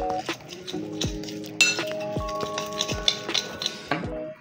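Metal spoon stirring a thick spice-and-yogurt marinade in a glass bowl, scraping and clinking against the glass, with one sharper clink about a second and a half in. Background music with held notes plays underneath.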